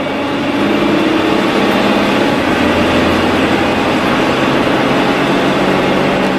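400-horsepower Caterpillar C9 diesel of a Class A motorhome pulling hard under acceleration, heard from the driver's cab. It gets louder in the first second, then holds steady, with a change in its note about two seconds in.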